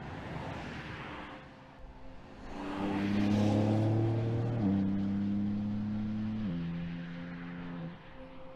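BMW X4 M's twin-turbo inline-six driving past with a rush of engine and tyre noise that peaks about three seconds in, then an even engine note that drops in pitch in two steps, about halfway and near the end, as the car pulls away.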